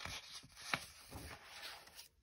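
A page of a hardcover picture book being turned by hand: a soft paper rustle and swish, with a small sharp tick about three quarters of a second in.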